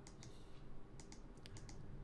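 A handful of faint, irregular clicks of computer keys being pressed.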